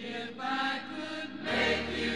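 Music: an instrumental passage of a jazz-rock band recording, with sustained chords swelling at the start and the band coming in fuller, with bass, about a second and a half in.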